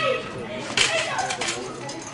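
Indistinct voices talking, with a few light footfalls on a hard floor as the athlete steps over low hurdles.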